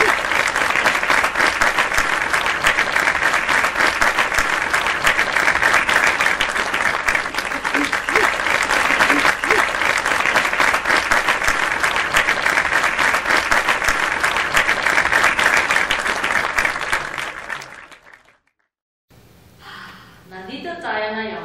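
Loud, sustained applause from an audience clapping, starting abruptly and holding steady before fading out near the end.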